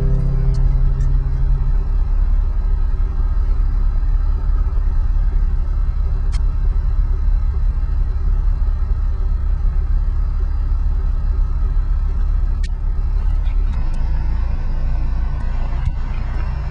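Steady low rumbling noise, with a few faint clicks; the last low note of the music dies away about two seconds in.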